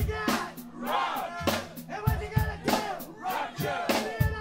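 Live heavy metal band playing: hard-hit drums under shouted, chant-like vocals, with the crowd shouting along.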